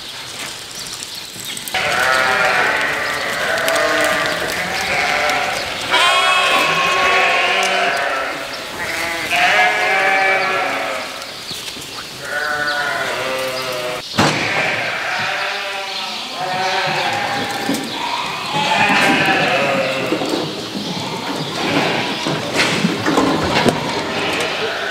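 A flock of sheep and lambs bleating, many overlapping wavering calls following one another almost without a break after the first couple of seconds.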